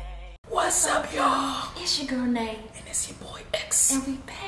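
The end of an intro music track fades and cuts off, followed by hushed, half-whispered voices with hissy sibilants.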